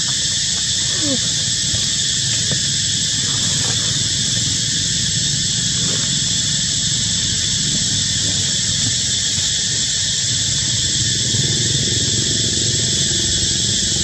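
Steady, high-pitched drone of a forest insect chorus, with a low rumble beneath it.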